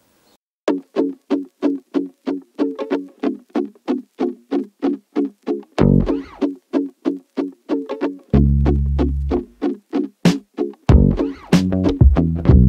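Background music: quick plucked notes at about four a second, with a bass line joining about halfway through and the music growing fuller near the end.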